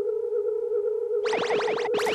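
Synthesized cartoon sound effect of a ray machine: a steady electronic hum, joined a little past halfway by a rapid stream of sweeping electronic zaps as the beams fire.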